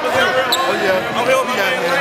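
Basketballs bouncing on a gym's hardwood court under men's voices talking, in a large, echoing gymnasium.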